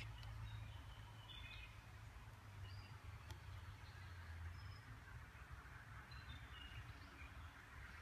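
Near silence: faint outdoor ambience with a low rumble and a few faint, short bird chirps.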